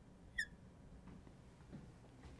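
Marker nib squeaking on a glass lightboard as it writes: a short high squeak right at the start and another about half a second in, then faint room noise.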